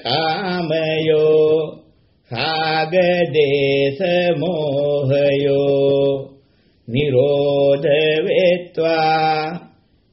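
A Buddhist monk chanting Pali in a drawn-out, melodic recitation with a steady male voice. There are three long phrases, each separated by a short pause for breath.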